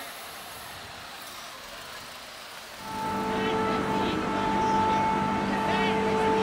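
A car horn sounding in one long, steady blast that starts about three seconds in, over the low noise of a street crowd.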